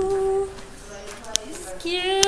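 A young woman's voice holding a long steady hummed note, then starting another near the end, with a sharp click in between.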